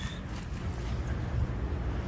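Low rumble and hiss of handling noise on a phone's microphone as it is carried and swung around.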